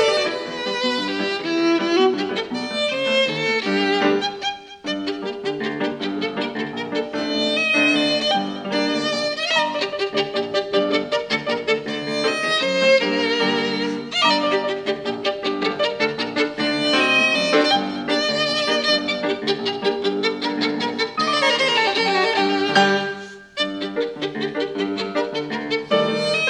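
Violin and grand piano playing an Ecuadorian pasillo together, with two brief pauses in the music, about five seconds in and near the end.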